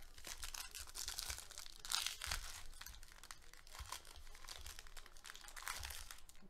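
Foil trading-card pack crinkling and tearing as it is handled and ripped open by hand: a dense run of small crackles, loudest about two seconds in.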